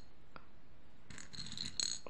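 Plastic beads clicking faintly and nylon thread rustling as a bead is handled and threaded onto the line: one small click, then a short cluster of scratchy clicks about a second in.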